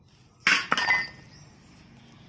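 Two quick clinks of something hard striking metal or glass, the second followed by a brief high ring that dies away within about half a second.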